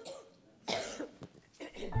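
A person coughing once, a short sharp burst about two-thirds of a second in.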